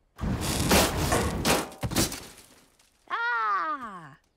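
A rushing blast of cartoon dragon fire with metal knights' helmets clanging and clattering as they are knocked down, lasting a little over two seconds. Near the end, a single voice gives a falling vocal sound.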